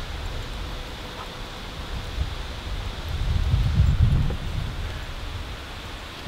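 Wind on the microphone outdoors: a low, steady rumble that swells about three and a half seconds in and eases off again, with some rustling.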